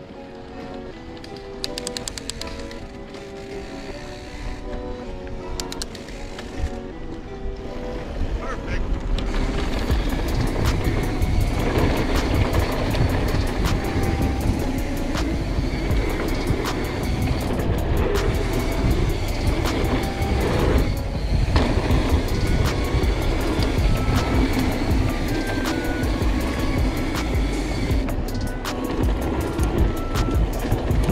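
Background music with a stepping melody. About ten seconds in, a loud rough rumble of mountain bike tyres rolling over a dirt trail comes in under the music and carries on.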